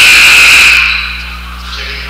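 Basketball referee's whistle blown once: a loud, shrill blast of about a second that fades out in the gym.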